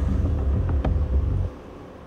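Loud low outdoor rumble, uneven like wind buffeting or traffic, with a single sharp knock a little under a second in. It cuts off abruptly about a second and a half in, leaving a faint hiss.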